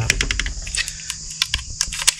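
Quick, irregular plastic clicks and taps from a small plastic air compressor and Nerf blaster parts being handled, about a dozen in two seconds.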